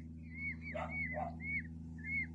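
Newborn peafowl chicks peeping: a run of short, high chirps, each rising and falling, about three a second. Two short, lower sounds come about a second in.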